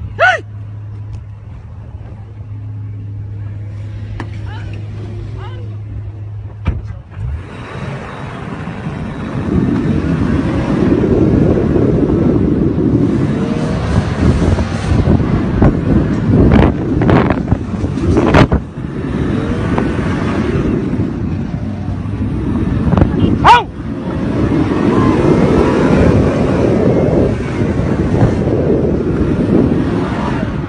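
A motor vehicle: a steady low engine hum for the first seven seconds or so, then a much louder, noisy driving sound as it gets under way, with several sharp knocks along the way.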